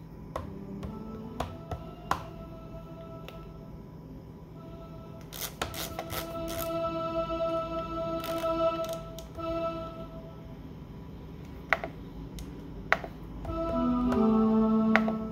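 Solina string-ensemble plugin on an Akai MPC One, Violin Cello Split preset, played from the pads. Held string-machine notes start about four and a half seconds in and come again near the end. Sharp clicks of pads and buttons being pressed are heard between them.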